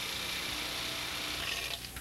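Steady background noise of a roadside concrete work site, with a faint low engine hum.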